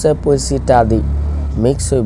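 A man speaking continuously, lecturing, with a low steady rumble underneath that is strongest through the middle.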